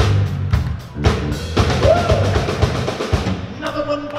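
Live rock band playing: a drum kit beat over a steady bass line, with a short arching guitar glide about two seconds in. The playing thins out near the end.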